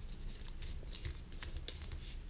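Paper envelope being handled and opened by hand: soft rustling with a few faint, short crinkles.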